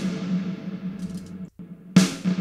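Snare drum played through a Valhalla VintageVerb chamber reverb with early diffusion at zero. The tail of one hit breaks into staggered, delay-like repeats as it dies away, and a second hit comes near the end.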